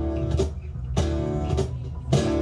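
Live acoustic band playing an instrumental passage: acoustic guitars strummed in chords, a little under two strums a second, over a steady acoustic bass guitar line.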